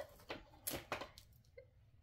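Small scissors clicking and snipping as a little plastic tag on a doll's outfit is cut, with a few sharp faint clicks in the first second or so.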